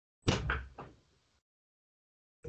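A sudden thump about a quarter second in, dying away over about half a second, followed by a fainter short knock.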